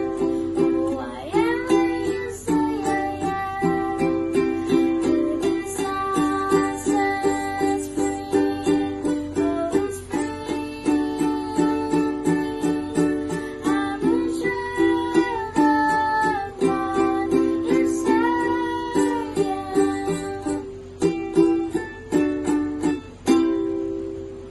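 A child singing while strumming a ukulele in a steady rhythm, with a few sharp strums near the end.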